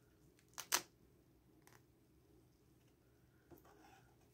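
Quiet handling of a plush toy as it is unrolled from its fabric wrap, with two short sharp clicks close together a little under a second in and a few faint ticks later.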